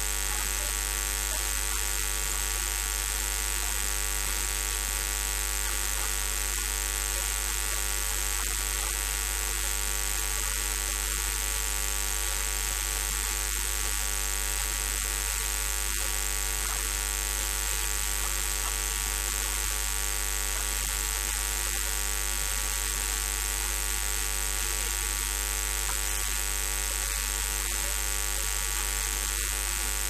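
Steady electrical mains hum and buzz with background hiss, a constant drone of many evenly spaced overtones that does not change.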